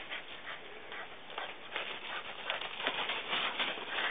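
Dry fallen leaves rustling and crunching under feet and paws in irregular faint crackles, busier in the second half.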